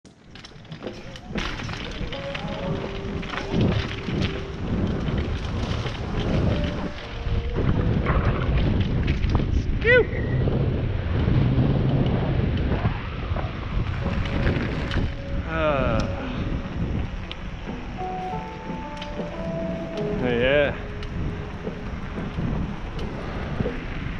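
Wind buffeting a helmet-mounted camera's microphone over the rumble of mountain-bike tyres rolling, first on a dirt trail and then on pavement. A few brief pitched sounds, whistles or squeals, come through the noise.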